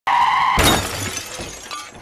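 Glass-shatter sound effect for a logo reveal: a short steady tone, then, about half a second in, a sudden crash of breaking glass that fades away over the next second and a half.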